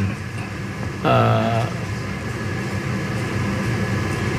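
A man's hesitation in speech: one drawn-out flat 'uh' about a second in, then a pause filled only by a steady low background hum.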